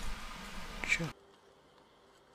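Steady hiss of an open microphone, with a brief voice sound just before it cuts off abruptly about a second in, leaving near silence.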